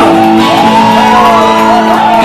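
Live punk rock band playing loudly, with electric bass, drums and accordion under shouted vocals.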